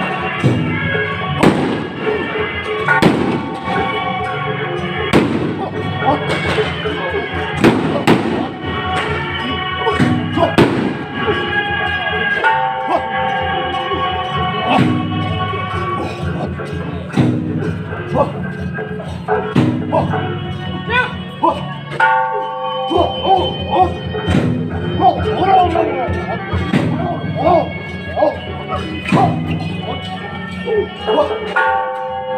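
Traditional temple-procession music: held wind-instrument notes over sharp percussion strikes that come every second or two.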